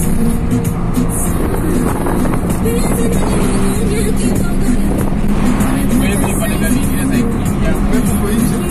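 Music with a singing voice playing from the car's dashboard stereo, over the steady engine and road noise inside the moving car's cabin.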